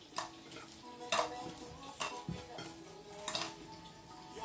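Kitchen utensils and dishes clinking and knocking while food is plated: four or five separate clinks, each with a short ring.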